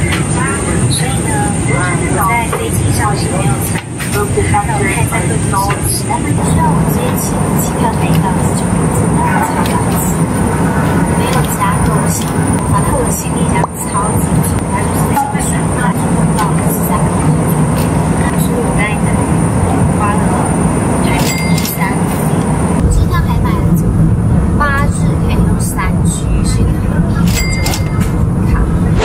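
Steady low drone of an airliner's cabin noise, with a woman talking over it.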